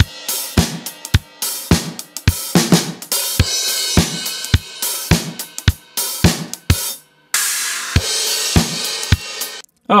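Playback of a mixed multitrack drum-kit recording: kick, snares, hi-hat and overhead cymbals in a steady groove with a kick about every half second. About seven seconds in, a cymbal wash rings out, and the playback stops shortly before the end.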